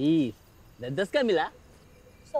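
A person's voice making two short wordless vocal sounds with gliding, rising-and-falling pitch: a brief one at the start and a longer one about a second in.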